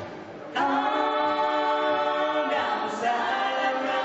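Live vocal harmony: several voices holding sung notes together with little instrumental backing, one long held chord starting about half a second in and a second one starting near the three-second mark.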